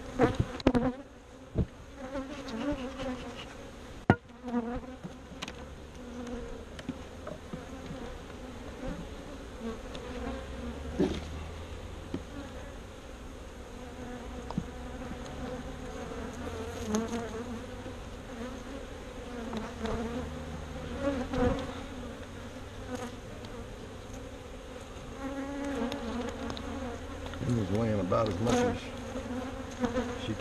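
Honeybees buzzing in a steady hum around an open hive, single bees flying close past the microphone with a pitch that rises and falls as they pass. A few sharp knocks of hive parts being handled near the start and about four seconds in.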